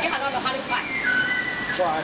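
Several short, high whistled notes held steady, with people talking at the same time.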